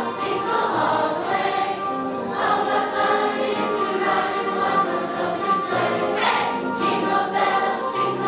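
Children's choir singing a Christmas song with musical accompaniment.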